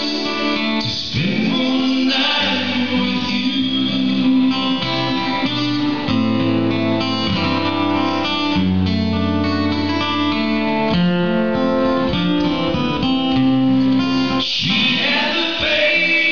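Live song: an acoustic guitar with men singing, the notes held long.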